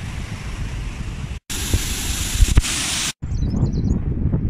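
Wind rumbling and fluttering on a phone microphone. It drops out abruptly twice, and the middle stretch is a louder, hissier gust.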